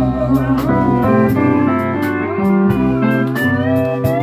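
A live country band playing an instrumental break led by a pedal steel guitar, whose held notes slide up and down in pitch, over acoustic guitar and a steady beat.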